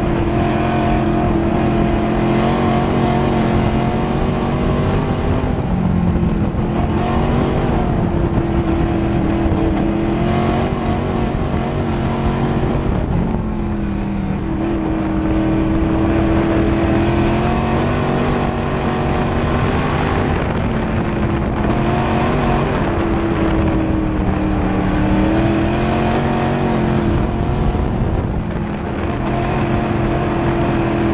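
A dirt-track sportsman race car's V8 engine running hard, heard from inside the cockpit. Its pitch drops briefly about every seven or eight seconds as the driver lifts for a turn, then climbs again on the straight.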